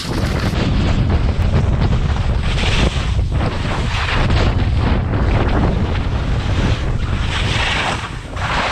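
Heavy wind buffeting on an action camera's microphone during a fast downhill ski run, with the hiss and scrape of skis on snow swelling in surges as the skier turns.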